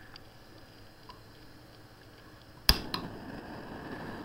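A mini propane-butane canister stove's piezo igniter snaps once, near the end, and the burner lights on the first try, then runs with a steady hiss. Faint handling ticks come before it.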